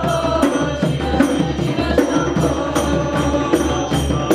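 Kirtan music: a frame drum and a barrel hand drum keep a steady beat of about three strokes a second, with bright jingling above and chanted singing.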